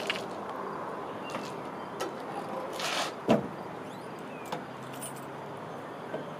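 The trunk lid of a 1938 Buick Special being lowered and shut: a few light clicks and a rattle, then one solid thump a little over three seconds in as it latches, and a faint click afterwards.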